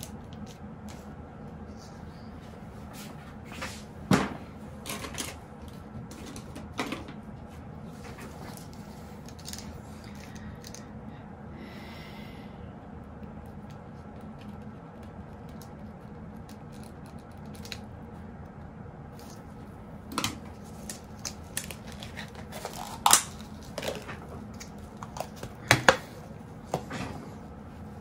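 Steady low room hum with a few scattered small clicks and knocks, the loudest about four seconds in and a cluster of sharper ones in the last eight seconds.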